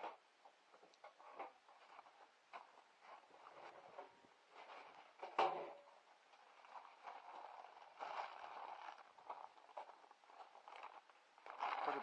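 Faint handling sounds at galvanized metal cans: scattered light clicks and knocks, one louder knock about five seconds in, and a stretch of rustling, like a plastic bag of peanuts being handled, later on.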